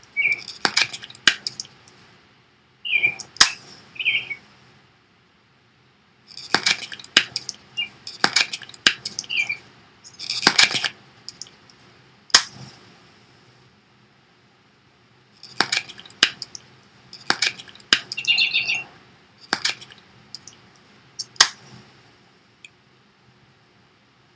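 Plastic clicking from a Respimat soft mist inhaler being primed over and over: the clear base twisted with runs of ratchet clicks until it clicks into place, the cap flipped, and the dose release button pressed with a sharp click, in three rounds. A few short high squeaks come in among the clicks.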